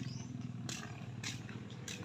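Soft footsteps on a dirt path, a faint step roughly every half second or so, over a low steady outdoor hum.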